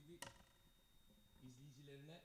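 Near silence: quiet studio room tone with a faint voice and one brief click about a quarter second in.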